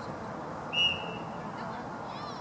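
A referee's whistle: one short, loud blast of a single steady pitch, about a second in.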